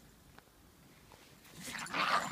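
Two dogs playing in snow: faint scuffling at first, then a short, rough dog vocal sound near the end as they tussle.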